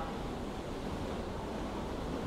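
Steady background hiss with no distinct events.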